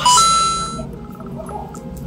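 Short bright chime sound effect, two notes stepping up in pitch, fading out within about a second.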